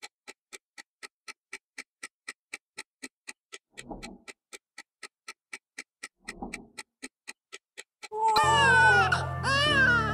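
Clock ticking steadily, about four ticks a second, with two soft muffled sounds in the middle. Near the end a newborn baby starts crying loudly over music.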